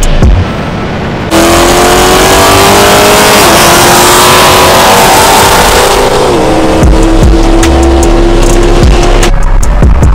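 Background music, then about a second in a V8 car engine at full throttle cuts in loudly, over heavy wind and road noise: its pitch climbs slowly and drops twice at upshifts, the sound of a hard run through the gears in a street race. Music returns near the end.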